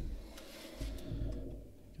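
Faint handling sounds of a trading card being set into a stand on a tabletop: a few light clicks and low thumps from the hand and card against the table.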